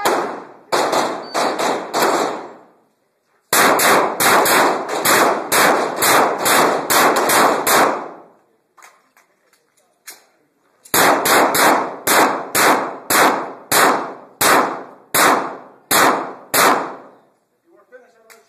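Rapid pistol fire echoing off the concrete walls of an enclosed range while a shooter works a timed course of fire. A few quick shots, a short break, a long fast string, a pause of a few seconds in the middle, then a steadier string of shots about two or three a second that stops shortly before the end.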